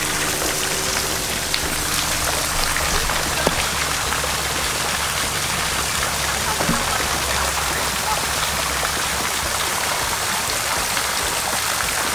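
Steady splashing of a stream of water pouring down into a pond.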